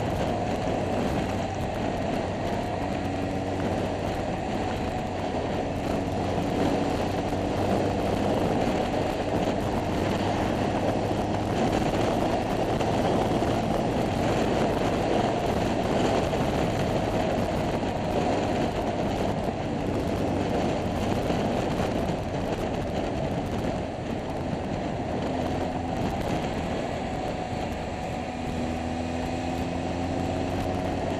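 Scooter engine running under way with heavy wind noise on the onboard microphone. The engine's pitch rises a little near the end.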